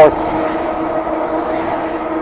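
Electric hub motor of a Shengmilo MX02s fat e-bike running under level-3 pedal assist at about 35 km/h, a steady whine of several fixed tones, over the even rush of fat tyres on asphalt and wind.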